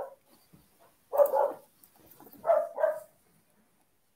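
Three short vocal calls: one about a second in, then two in quick succession about two and a half seconds in.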